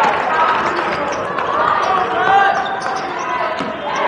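Game sound from a basketball court in a gym: a ball bouncing on the hardwood and players moving, under a steady wash of voices in the hall.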